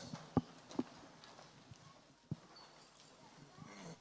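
A few faint, short knocks and thumps over a quiet hall: two close together near the start and one more a little past the middle. They are handling noise from a handheld microphone.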